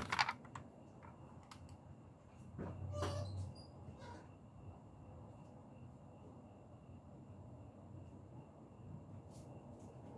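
Quiet room with faint, scattered clicks from diecast model cars being handled on a cloth-covered table, and a brief muffled sound about three seconds in.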